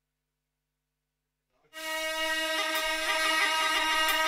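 Dead silence for about the first second and a half, then a vinyl record starts on the turntable: a remix that opens abruptly with held string chords.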